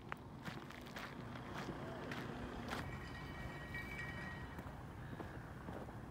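Faint footsteps on a dry, grassy and sandy path, about two steps a second, over a low steady rumble.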